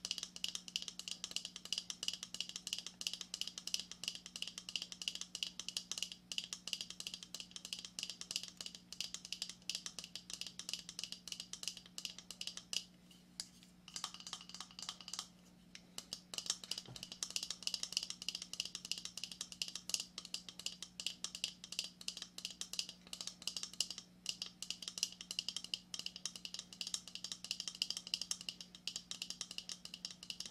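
Fast, light fingernail tapping and scratching on a hard, hollow shell, many small clicks a second with a couple of short pauses about halfway through. A faint steady hum sits underneath.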